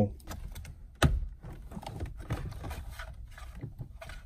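Small plastic clicks and rustling from handling car interior trim and a wiring connector, with one sharper click about a second in.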